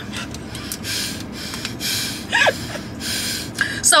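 Breathless, wheezing laughter: a string of gasping, breathy exhalations with one short squeaky vocal note about two and a half seconds in.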